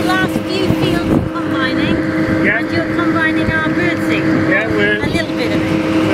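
Wind buffeting the microphone in uneven gusts, with a steady low hum running beneath it.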